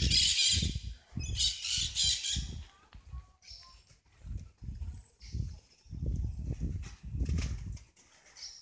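Footsteps and handheld-camera thumps at a walking pace, with birds calling: two harsh squawking bursts in the first two and a half seconds, then a few thin chirps.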